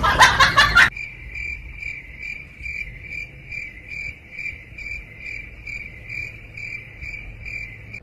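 A cricket chirping steadily, about three chirps a second in a high thin tone, starting about a second in after a louder sound cuts off.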